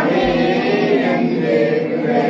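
A group of people singing a devotional hymn together, several voices blending in a steady, continuous line.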